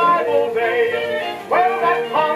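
A 1930 jazz orchestra recording playing from a 78 rpm shellac record on a record player: a voice sings over the band, and a fresh phrase comes in sharply about one and a half seconds in.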